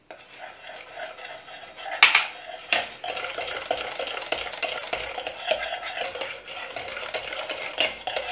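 Wire whisk stirring a thick, pudding-like flour-and-milk paste in a stainless steel saucepan, its wires scraping the pan steadily. There are two sharp clinks about two and three seconds in.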